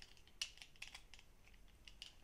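Faint, light clicks and taps from handling a small plastic super glue bottle, with one sharper click about half a second in.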